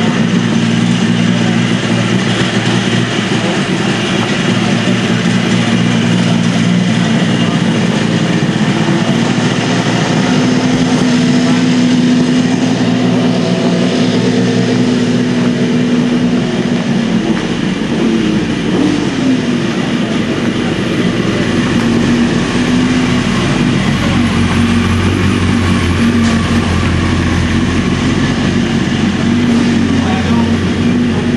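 A motorcycle engine running steadily nearby, its note shifting about two-thirds of the way through, with voices in the background.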